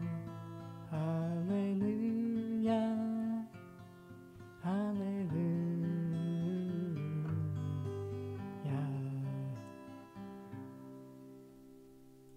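Acoustic guitar strummed in chords under a man's voice singing long, wavering held notes in a slow closing chorus. There is a short lull a few seconds in, and the last chord rings out and fades away near the end.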